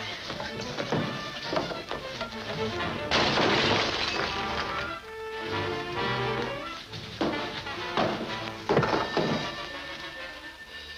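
Dramatic film-score music with a sudden loud crash of something shattering about three seconds in.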